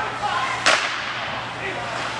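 A single sharp crack on the ice about two-thirds of a second in: a hockey puck being struck by a stick or slamming against the boards, with a short ring after it. Faint voices from the rink and a steady low hum sit underneath.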